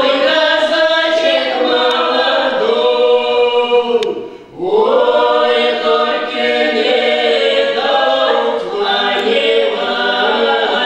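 A small mixed ensemble of three women and a man singing a Russian Cossack folk song a cappella, in harmony and on long held notes. The voices break off briefly about four seconds in, then come back in together with an upward slide into the note.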